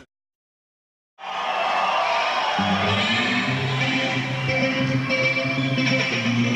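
About a second of dead silence, then live rock music at full volume cuts in: a dense wash of amplified guitar, with steady low bass notes joining about two and a half seconds in.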